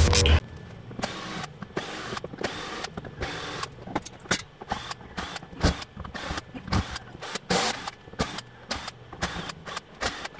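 Screws being taken out of the plastic back cover of a Samsung LED TV with an orange-handled screwdriver: irregular clicks, rattles and short scraping bursts over a faint low hum.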